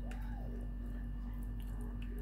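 Thick, hot chocolate pudding mixture pouring from a plastic jug into a clear plastic cup, with faint wet squishing and a few light plastic clicks, over a steady low hum.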